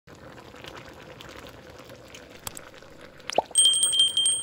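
Shrimp simmering in sauce in a wok, the sauce bubbling and popping softly. Near the end a click and a high, ringing chime come in, the sound effect of an on-screen subscribe button.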